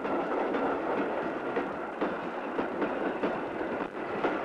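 A train running along the track: a steady rolling rumble with irregular clicks from the wheels on the rails.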